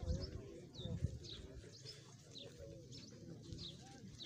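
Small birds chirping repeatedly in short high notes over a low murmur of men's voices from a gathered crowd, with a couple of brief low thumps near the start and about a second in.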